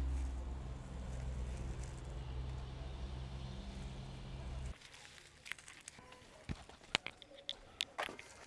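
A steady low hum that cuts off suddenly a little under five seconds in, then faint crackling with scattered sharp clicks as paper, plastic and dry sticks catch fire in a coal pot.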